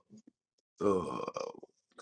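A short voiced sound from a person, lasting about half a second and starting about a second in, in a pause between spoken phrases.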